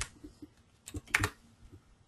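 Keystrokes on a computer keyboard as a spreadsheet formula is typed and entered: a few faint, scattered key clicks, then a short quick cluster about a second in.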